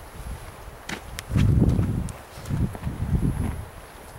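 Footsteps on the ground: a few dull thuds, with some light clicks about a second in.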